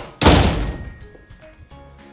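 One loud thunk about a quarter second in, dying away over most of a second: the sound of the cane's 'BING!' strike in the comic. Soft background music underneath.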